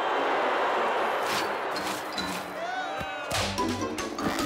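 Cartoon soundtrack: a rush of noise that fades away over the first two seconds, then a short comic music cue with several sharp hits near the end.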